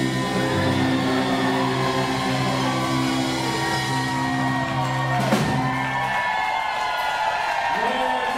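Live band and singer holding the final chord and note of a song, closed by a drum hit about five seconds in. The music then stops and the audience cheers.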